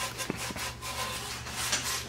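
A cloth rag rubbing and wiping a hubcap, faint uneven strokes with two light clicks about a third and half a second in.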